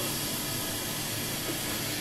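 Steady sizzling hiss of oil frying in the covered pan of an automatic stir-fry cooking machine.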